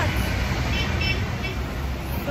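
Steady low rumble of street traffic, with faint distant voices about midway through.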